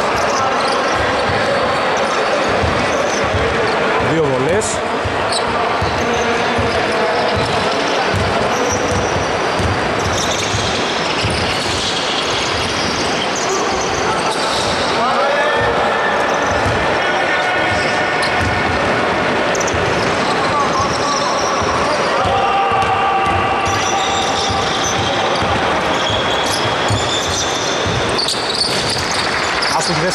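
Basketball bouncing repeatedly on a hardwood court during play, with players' voices calling out in a large hall.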